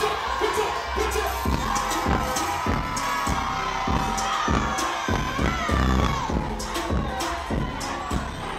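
Nightclub crowd cheering and shouting over loud club music with a steady bass beat.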